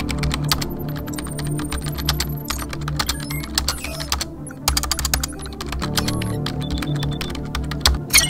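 Rapid typing on a computer keyboard: a dense run of key clicks with a brief pause about halfway through.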